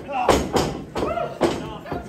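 Strikes from a pro wrestler landing on an opponent trapped in the ring corner: three sharp slaps of a hit on the body, with shouting voices between them.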